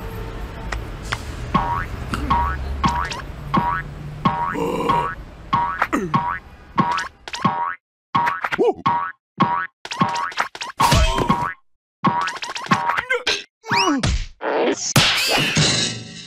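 Cartoon spring 'boing' sound effects, repeating about twice a second and then more irregularly, as a coiled metal spring bounces. Gliding squeals come in near the end.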